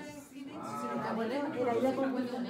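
Indistinct human voices in a room: voice-like sounds that rise and fall in pitch begin about half a second in.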